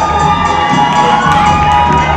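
An audience cheering and shouting, many high children's voices among them, over loud dance music. The cheering swells through the middle and eases near the end.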